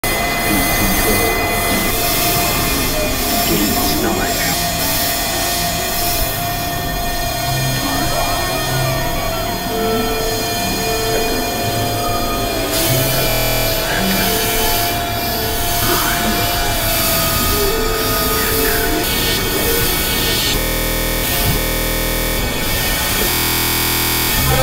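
Experimental electronic noise music made on synthesizers. A dense, steady drone with a held mid-pitched tone runs under short repeated synth notes, and it breaks into glitchy, stuttering passages near the end.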